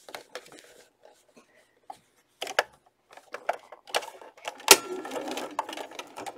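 Fabric and cord being handled and positioned under a sewing machine's presser foot: scattered small clicks and rustles, with one sharp click about three-quarters of the way through.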